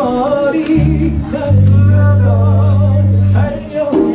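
A live band in rehearsal, with a singer's wavering voice over a low bass note held from about one second in to about three and a half seconds.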